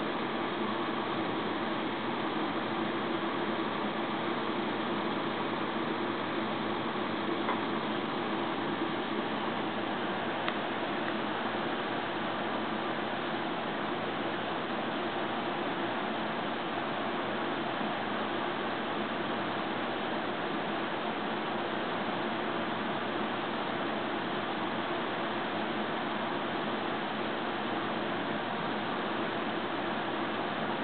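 Box fan running steadily: an even rush of air with a faint low hum, unchanging throughout.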